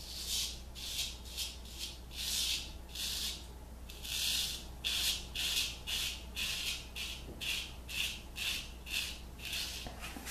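Straight razor scraping through lathered three-day stubble on the cheek in short, quick strokes, about two a second.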